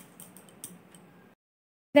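A few faint, light clicks over low room noise, then dead silence for about half a second.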